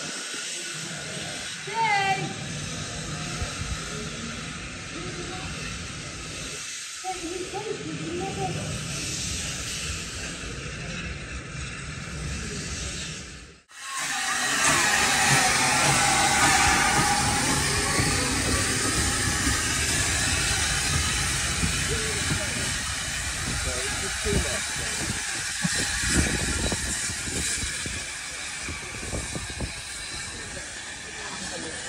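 Low steady background with some voices, then a brief dropout about halfway, followed by loud steady steam hissing right beside a South Eastern and Chatham Railway O1 class steam locomotive. The hiss sweeps up and down in tone for a few seconds after it starts.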